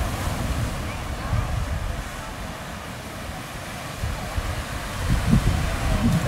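Small ocean waves breaking on a beach, with wind rumbling on the microphone. Faint voices can be heard in the first couple of seconds.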